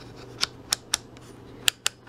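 Rotary function selector switch of a UNI-T UT81B scopemeter being turned by hand, clicking through its detents: five sharp clicks, three about a quarter second apart, then two close together near the end.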